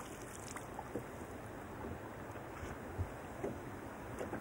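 Steady rush of wind and lake water around an open wooden boat, with water dripping from a landing net lifted from the lake and a few light knocks as the net comes into the boat, the clearest about three seconds in.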